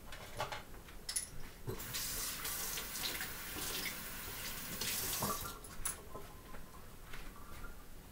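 Water running from a kitchen tap for about three seconds, with a few light knocks and clinks before and after.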